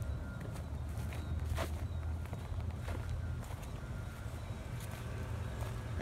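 Footsteps of a person walking over grass and onto a dirt path, heard from a handheld phone, over a steady low rumble.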